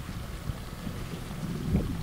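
Low, steady rumble of wind on the microphone.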